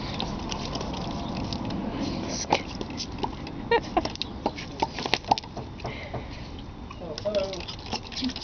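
Hand trigger spray bottle squirting at a puppy that snaps and bites at the spray: a run of irregular sharp clicks and snaps from the trigger and the puppy's jaws.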